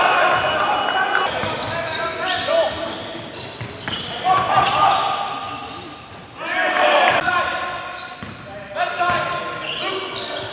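Live basketball game sound in a gym: the ball bouncing on the court among sharp knocks, with players' shouts and calls that no words come through in, all echoing in the large hall.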